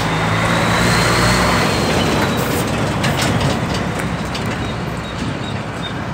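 A Mercedes-Benz grain truck with a trailer passing close by: its diesel engine and tyres are loudest in the first couple of seconds, with a thin high whine. The sound then eases into steady road and traffic noise.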